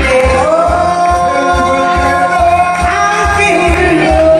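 Live trot song: a singer holds one long note for about three seconds, then moves on to a new rising phrase near the end. The band accompaniment underneath has a steady beat.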